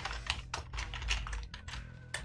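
Typing on a computer keyboard: a quick run of separate keystrokes.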